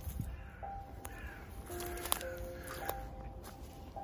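Background music with long held notes, with a bird calling a few times over it and a few light clicks.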